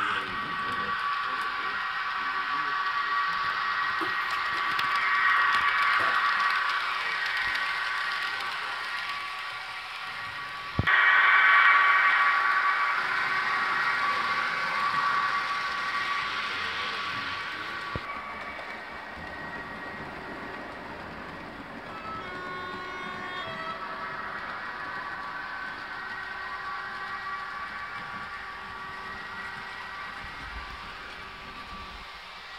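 Digital sound decoder of a Jouef BB 36000 model electric locomotive playing its running sound through its small speaker, together with the model's wheels on the track. It is a steady electric hum and whine with a few held tones. It swells, then jumps louder with a click about eleven seconds in, and turns softer in the second half.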